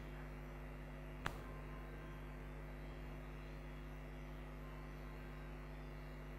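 Low, steady electrical mains hum from the microphone and PA system, with one short click about a second in.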